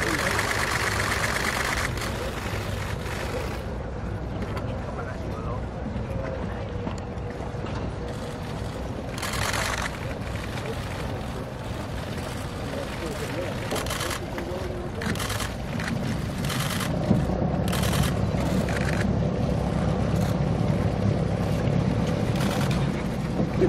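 Indistinct voices of people talking over a steady low rumble that grows louder near the end, with several short hissing bursts partway through.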